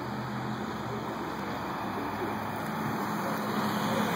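Steady outdoor hum of car traffic moving through a parking lot, with a low engine drone beneath it.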